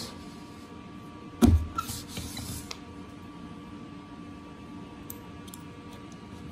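Hand grommet press brought down once, a loud clunk about a second and a half in as it sets a grommet in the banner, followed by a brief rustle of vinyl sliding on the table and a couple of small clicks near the end.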